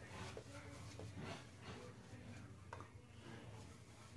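Shaving brush working lather over the jaw and neck: faint, short swishing strokes, a few a second.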